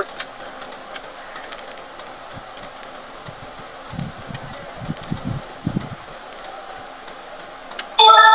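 Steady hum of a car's interior, the ventilation and road noise of a vehicle cabin, with faint scattered ticks and a few soft low thumps about halfway through.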